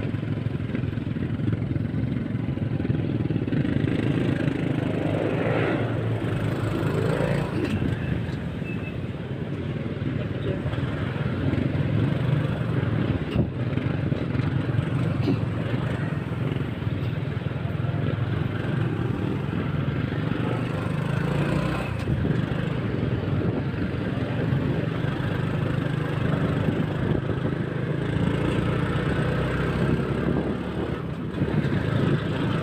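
A motorcycle being ridden, its engine and road noise running steadily, with voices heard at times.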